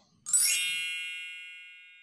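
A bright chime sound effect rings once about a third of a second in and fades away slowly, marking the change to the next letter.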